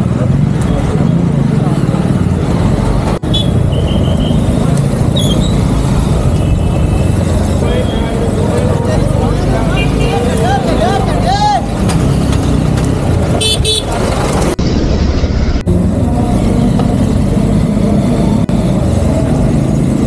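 Steady engine and road rumble from riding in traffic, with vehicle horns tooting several times in the first half.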